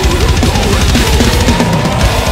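Heavy metal song with distorted guitars, driven by fast double-kick drumming and cymbals played on an electronic drum kit.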